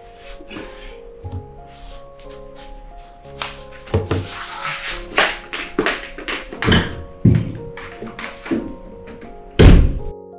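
Soft background music, with a string of knocks and thuds starting about three seconds in and one loud thud just before the end.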